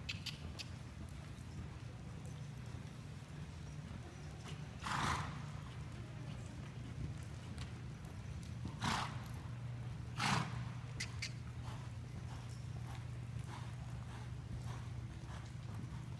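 Arabian gelding cantering on an indoor arena's dirt footing: soft hoofbeats over a steady low hum, with three louder rushing bursts about five, nine and ten seconds in.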